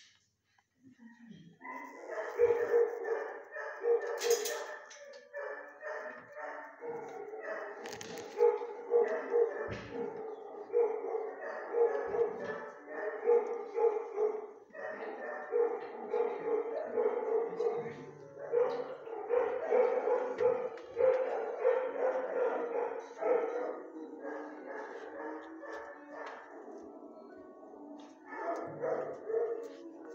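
Dogs barking over and over, almost without pause, in an animal-shelter kennel block with hard walls.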